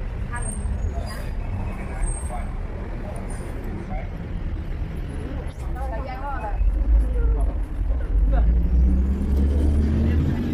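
Busy outdoor market ambience: scattered voices of passers-by over a low rumble that swells in the second half.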